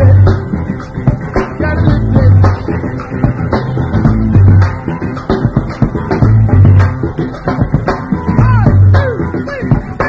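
Upbeat band music from bass guitar, drum kit, guitars and keyboard, with a heavy bass note about every two seconds and a few gliding notes near the end.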